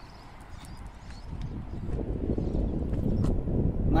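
Handling noise on the camera's microphone: a rough, crackling rumble that builds from about a second in and grows louder as the camera is moved in close.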